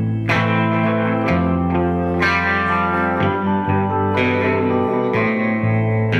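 Live country band playing an instrumental break with no vocals. An electric guitar carries the lead, with new notes and chords about once a second over a moving bass line.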